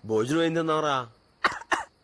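A man's long, drawn-out vocal sound lasting about a second, followed by two short, sharp coughs about a second and a half in.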